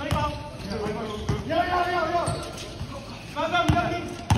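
A basketball being dribbled on a court, with several sharp bounces, and players shouting on the court between them.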